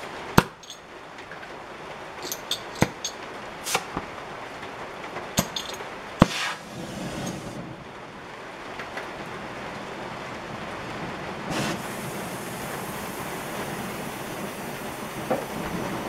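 Several sharp clicks and knocks in the first six seconds, then a steady hiss from about seven seconds in: an oxy-fuel torch with a cutting tip burning as it heats a steel part for silver soldering.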